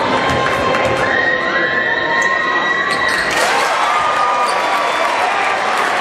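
Gym crowd cheering and shouting, with long drawn-out yells from many voices rising and falling over the steady noise.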